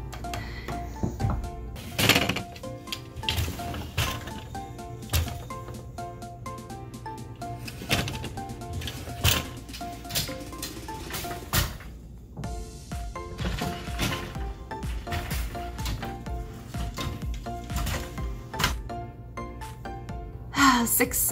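Background music over repeated wooden clacks and knocks from a vintage four-shaft floor loom being worked: treadles pressed, shafts lifting and dropping, and the overhead swing beater moving.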